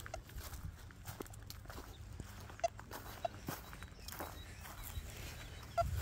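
Footsteps on grass, with a few short, high beeps from a Quest Q60 metal detector: two near the middle and a quick cluster near the end as its control-box buttons are pressed.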